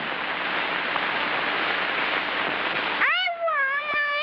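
A steady hiss on the old soundtrack, then about three seconds in a high, wavering, drawn-out vocal cry from a cartoon character, meow-like in pitch.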